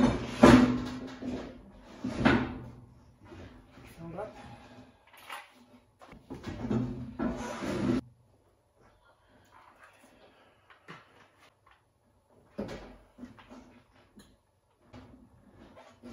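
Clunks, knocks and rattles of parts and tools being handled while setting up to fuel the motorcycle, with a short laugh a couple of seconds in. About halfway the sound drops suddenly to faint, scattered handling noises.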